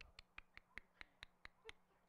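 A quick run of about nine faint, evenly spaced clicks, about four a second.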